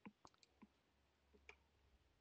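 Near silence broken by a few faint, short clicks, most of them in the first half-second and one about a second and a half in.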